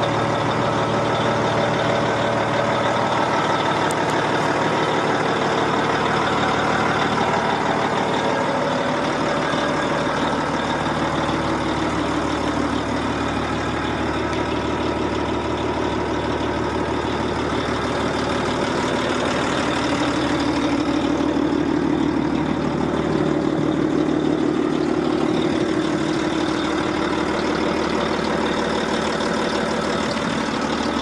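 A Volvo L220F wheel loader's six-cylinder diesel engine idling steadily.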